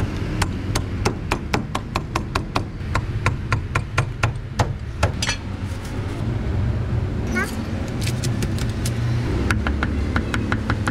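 Meat cleaver chopping roast meat on a thick round wooden chopping block, sharp strokes about three a second that stop about five seconds in; chopping starts again near the end.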